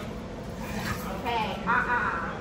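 A woman's voice speaking a few short words, over low room noise.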